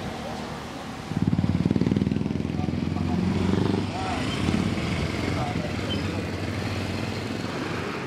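Small motorcycle engine revving up suddenly about a second in, loudest for the next few seconds, then running on more steadily as it pulls away.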